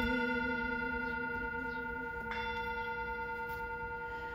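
Hand-held metal singing bowl struck with a wooden mallet and ringing, several steady overtones sounding together and slowly fading with a slight wavering. It is struck again about two seconds in.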